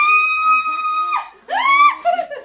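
A woman's high-pitched squeal, held long and then dropping about a second in, followed by a shorter rising squeal near the end, as she is lifted off the floor.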